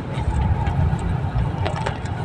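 Car engine and road rumble heard from inside the cabin while driving, a steady low drone.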